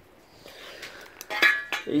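Metal bracket clinking and clattering against the vehicle's sheet metal as it is pulled free, a short cluster of clinks with a brief ring about a second and a half in.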